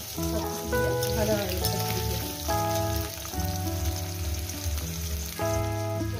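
Diced potatoes sizzling as they fry in oil in a metal kadai, over background music of held notes and chords that change every second or so.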